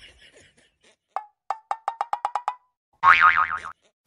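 Cartoon sound effects: a run of short ringing plinks, all on one note, that speed up, then about a second later a loud wobbling boing.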